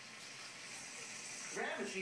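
Onions, tomatoes, green chillies and mango frying in a pan, a steady sizzle heard through a television speaker; a man's voice comes in near the end.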